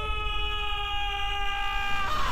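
A person's long scream, held at one steady high pitch, over a low rumble.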